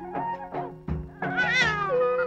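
Film background music in a traditional style: a wind-instrument melody over a steady drum beat, with a bright wavering note that falls in pitch about halfway through.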